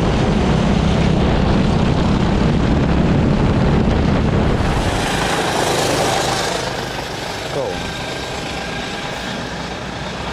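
Go-kart engine running at speed with wind noise on an onboard camera. About five seconds in it gives way to a thinner, quieter kart engine sound.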